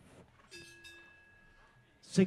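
Near silence, with a faint metallic bell-like ring struck about half a second in that fades away slowly.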